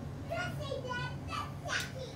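A young child's high-pitched voice babbling in short bursts, over a steady low hum.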